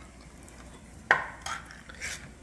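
Ring-pull lid of a metal food can snapping open with one sharp click about a second in, followed by two fainter clicks as the lid is worked.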